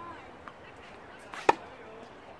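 A tennis racket striking a tennis ball once, a sharp crack with a short ring about one and a half seconds in, preceded by a fainter tap about half a second in.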